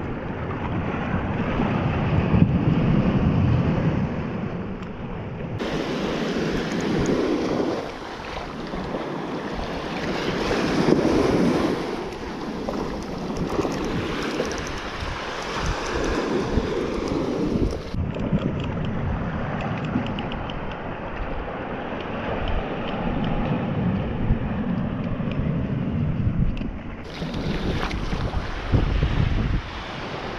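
Small waves breaking and washing up a sandy shore, with wind buffeting the microphone; the surf swells and falls back every few seconds.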